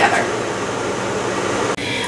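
Ninja Combi multicooker's convection fan running, a steady rush of air that cuts off abruptly near the end.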